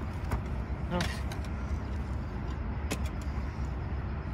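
Red soil being shovelled onto a small mound and spread by hand, heard as a few short scrapes and knocks over a steady low rumble.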